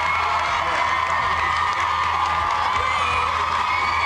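Studio audience of children cheering and screaming, a steady wall of many high voices with no break.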